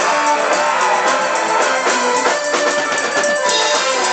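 Live band music at concert volume: a guitar melody in short stepping notes over a steady drum beat.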